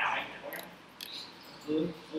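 Low, indistinct speech, with two short sharp clicks about half a second and one second in.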